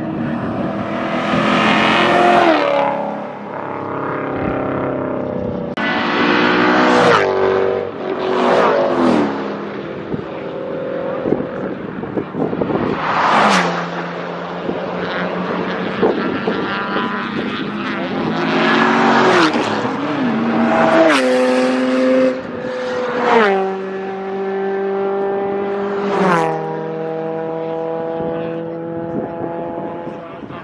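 Track-day cars passing one after another at speed, engines revving hard with their pitch stepping at gear changes and dropping as each goes by. There are about seven loud pass-bys, and one engine note is held high and steady through much of the second half.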